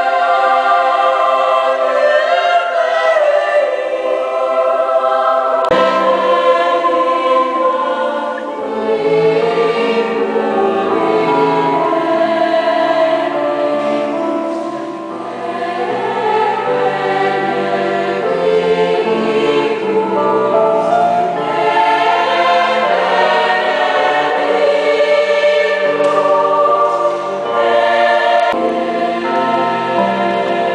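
Choir singing. For the first few seconds women's voices sing unaccompanied. About six seconds in the sound cuts to a large choir of young voices over a low cello line.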